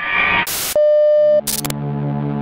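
Edited horror intro sound effects: a rising swell, then a short burst of static, a steady electronic beep, and a second crackle of static. About a second in, a low droning synthesizer chord begins under them and carries on.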